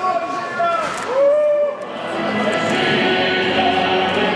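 Two long, drawn-out voice calls in the first two seconds, then music with steady held chords starts about two seconds in and carries on.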